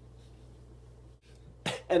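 A low, steady room hum, then near the end a man's short, sharp cough just before he starts talking again.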